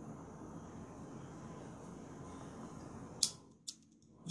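Faint steady room noise, then two sharp clicks near the end from a disposable butane lighter being struck.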